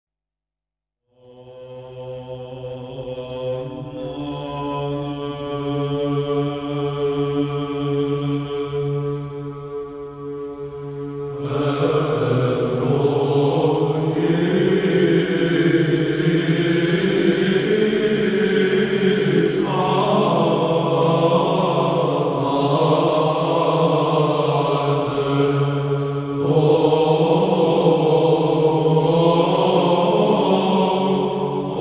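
Orthodox church chant: a held melodic line over a steady drone note begins about a second in, and fuller voices join at about eleven seconds.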